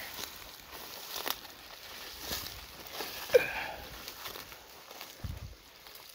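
Footsteps through grass and dry leaf litter, with rustling as the walker moves. A brief sharp sound just past the middle is the loudest moment.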